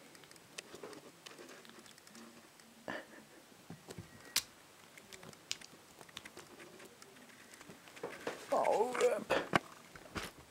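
Faint small clicks and scratching as a kitten paws at and bites a thin wire toy. About eight seconds in, a louder pitched voice sounds for over a second.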